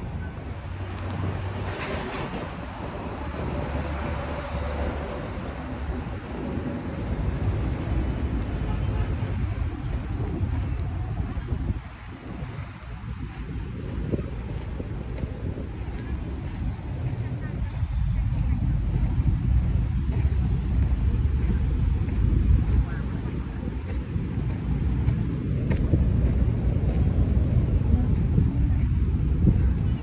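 Wind buffeting the microphone: a rumbling low roar that swells and fades in gusts, dipping briefly about twelve seconds in and growing louder in the second half.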